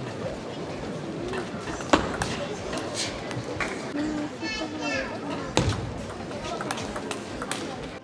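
Table tennis ball clicking off rackets and table in a few sharp, separate hits, over the murmur and chatter of spectators in a large hall, with one higher voice calling out about halfway through.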